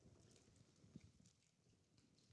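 Near silence: quiet room tone with faint scattered clicks and crinkles from the congregation handling plastic communion packets, with one slightly louder tick about a second in.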